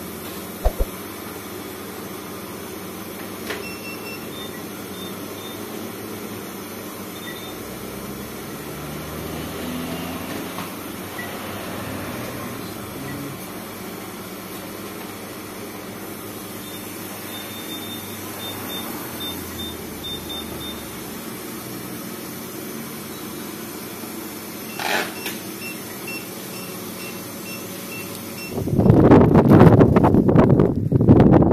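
Short, high electronic key beeps from a shop counter's calculator and card payment terminal as they are keyed in, over a steady faint room hum, with a run of beeps in the second half. In the last second or two, loud wind buffets the microphone.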